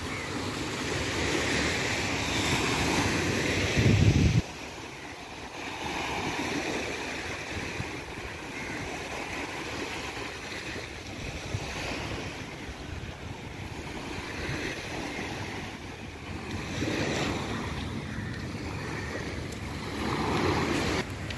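Small waves breaking and washing up a sandy beach, swelling and easing, with wind blowing across the microphone. About four seconds in, a brief, loud low rumble.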